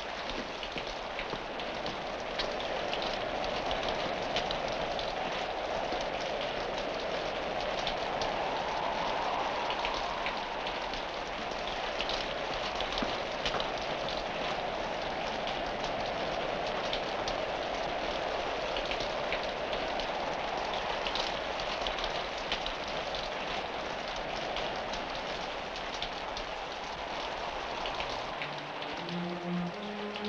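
Steady heavy rain pouring down throughout. A short rising run of music notes comes in near the end.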